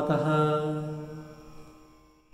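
A man's voice chanting a Sanskrit shloka, holding the last syllable on one sung note that fades out over about a second and a half.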